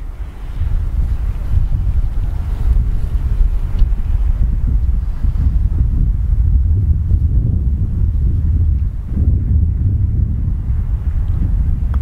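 Wind buffeting the microphone: a loud, gusting low rumble that rises and falls.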